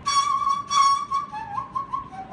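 A Korean transverse bamboo flute playing solo: a loud high note, sharply attacked twice, then the melody slides down through lower notes.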